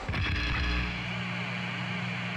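A low boom at the start that settles into a steady low hum.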